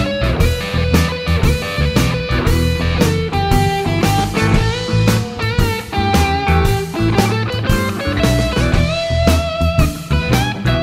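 Electric guitar playing a blues line with held notes, over a backing track with bass and a steady drum beat.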